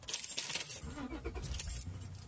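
Faint rattling and clicking, busiest in the first second, with a brief low murmur about a second in, inside a car's cabin.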